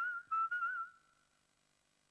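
Someone whistling a short tune of a few notes as an advert's closing jingle. The tune fades out about a second in and is followed by silence.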